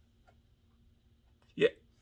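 A pause in a man's talk, near silent but for a faint low hum, then a single short spoken syllable about one and a half seconds in.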